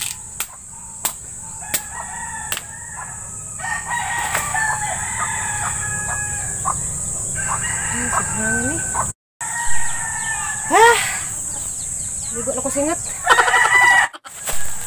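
Roosters crowing, several long drawn-out crows through the middle and end, with a few sharp knocks in the first seconds.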